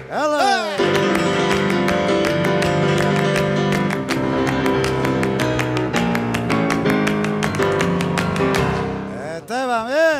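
Grand piano playing flamenco alegrías over quick, sharp rhythmic claps. A singer's sliding, wavering cry opens it and returns near the end.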